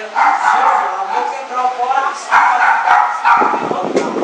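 A dog barking several times in short, loud bursts, among voices in the room.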